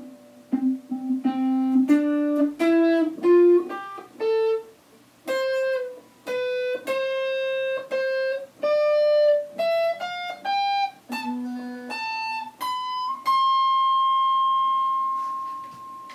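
Electric guitar strung with new Elixir Nanoweb strings, gauge 11–49, played as a line of single picked notes that climbs in pitch. About thirteen seconds in it settles on one long held high note that fades out near the end.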